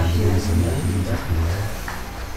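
A low, steady rumbling hum, stopping shortly before the end.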